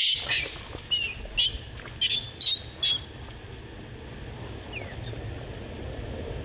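Infant long-tailed macaque giving distress squeals: about eight short, high-pitched squeaks in the first three seconds, some falling in pitch, then it goes quiet. A steady low rumble runs underneath.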